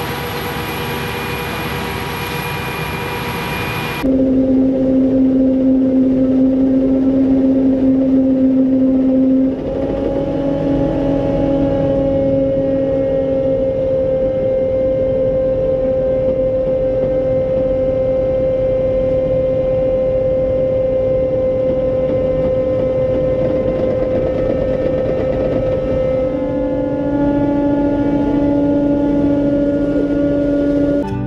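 Forage-harvesting machinery running steadily: a broad machine noise with a high whine, then, after a cut about four seconds in, a louder steady droning hum whose pitch shifts slightly a few times.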